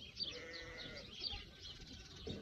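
A single drawn-out, bleat-like farm-animal call lasting about a second, over small birds chirping.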